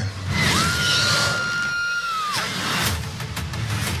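Film trailer soundtrack: music and sound effects, with a whine that rises, holds steady for about two seconds, then falls, over a rushing noise, followed by a few sharp hits.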